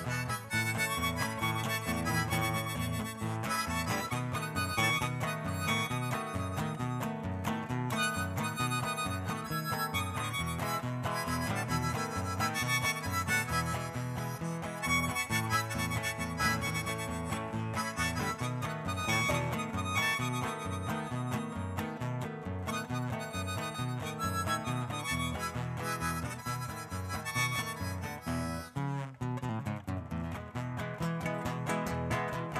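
Harmonica played with cupped hands over acoustic guitar accompaniment: an instrumental break between the verses of a folk song.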